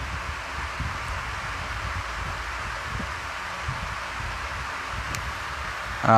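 Steady background hiss with a low rumble beneath, and a faint click about five seconds in.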